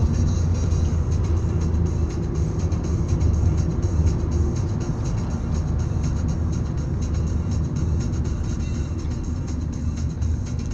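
Steady low rumble of road and engine noise inside a moving car's cabin, with music playing in the background.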